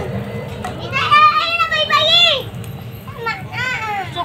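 A young child's high-pitched voice calling out in a long, wavering cry about a second in, then a shorter call near the end, over a steady background hiss.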